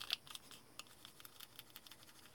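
Aluminium foil crinkling and ticking under a steel dental tool as it is rubbed down over a small plastic model car: faint, irregular little clicks.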